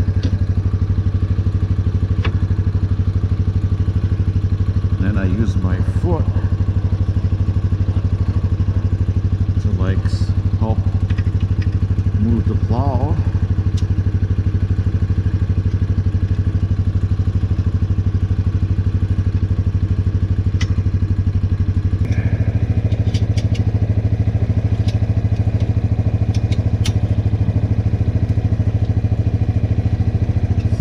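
A 2002 Kawasaki Prairie 300 4x4 ATV's single-cylinder four-stroke engine idling steadily, its note getting a little louder about two-thirds of the way through. Small metallic clicks come from the plow mount being handled.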